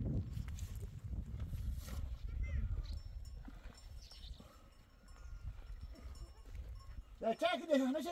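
Wind buffeting the microphone in a low rumble, fading away about seven seconds in. Right after it a loud, wavering "ah!" call begins.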